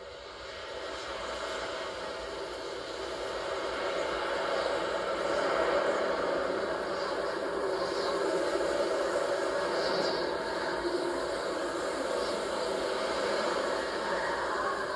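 Steady, wind-like rushing noise from a film soundtrack, heard through a TV's speakers. It swells up over the first few seconds and then holds.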